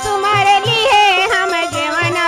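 Fiji Hindi folk song: a woman's voice comes in right at the start, singing with a wavering vibrato over steady harmonium chords and a low dholak drum beat.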